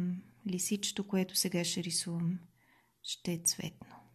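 A woman speaking softly in short phrases with a pause between them.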